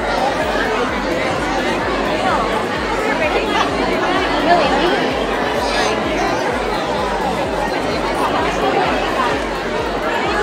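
Many children and adults chattering at once in a busy room: a steady babble of overlapping voices with no single voice standing out.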